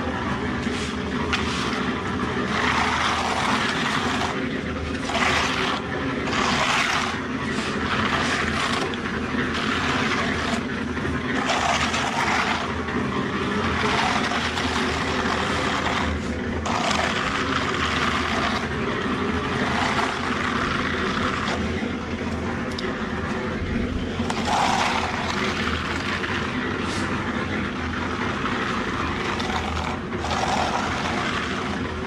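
A hand float scraping across wet concrete in repeated back-and-forth strokes as the slab surface is smoothed, each stroke a short scratchy swish. A steady engine-like drone runs underneath.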